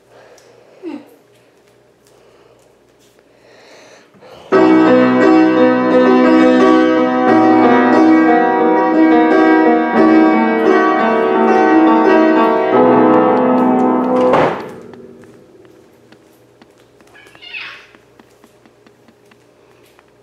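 A child playing a short, simple tune on an upright piano, chords held so the notes ring together. It starts suddenly about four and a half seconds in and stops about ten seconds later with a brief knock.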